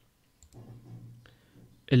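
A computer mouse click a little past halfway, selecting a menu item.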